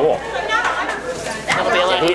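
Voices talking: overlapping chatter of several people.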